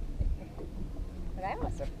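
Low, uneven rumble of wind on the microphone in the open air of a boat, with a dull thump a moment in; a man's voice starts near the end.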